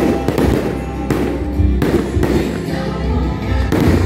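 Aerial firework shells bursting, with several sharp bangs spread across the few seconds, over loud music.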